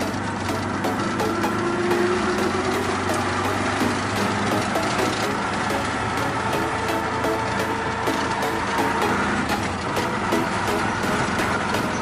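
Auto-rickshaw running along a street, its small engine and road noise heard from inside the cab, with electronic dance music with a steady beat underneath.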